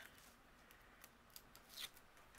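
Near silence with faint handling of paper and cardstock, and a brief scratchy paper rustle near the end.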